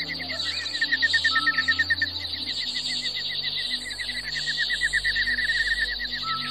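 Slow ambient music with sustained low notes, mixed with birdsong: a fast, evenly repeated chirping at several notes a second and a few short whistled notes, over a steady high insect-like buzz.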